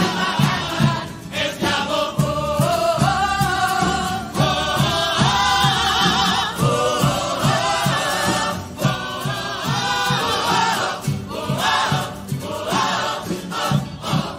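A large mixed carnival choir singing together over guitars and a steady low beat. The music dies away right at the end.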